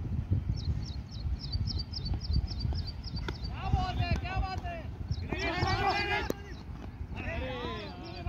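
Cricket players shouting across the field: three loud, drawn-out calls in the second half, over a steady low wind rumble on the microphone. Before the shouts, a high chirping repeats about five times a second.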